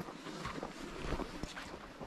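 Faint footsteps on a snow-covered trail, a few soft steps over a steady hiss of wind on the microphone.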